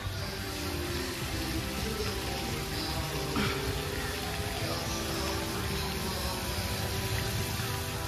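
Background music with sustained notes, over a steady hiss of splashing water.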